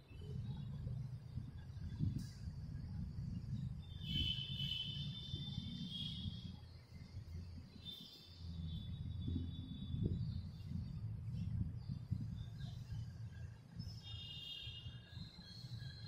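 Background ambience: a steady low rumble, with three bouts of high-pitched, bird-like calls, each lasting one to two seconds.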